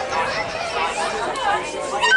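Several people talking at once near the microphone, overlapping chatter with no clear words.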